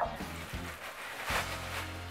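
Butter sizzling as it melts in a hot nonstick frying pan, the hiss swelling about halfway through, with background music underneath.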